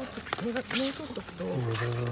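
People's voices talking, not clearly worded, with one voice held low and drawn out near the end. A short crisp rustle of leafy bok choy comes a little under a second in as a gloved hand grabs the plants.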